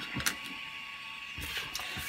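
A few light clicks and taps of small 3D-printed plastic parts being set down on a cutting mat, over a faint steady hum.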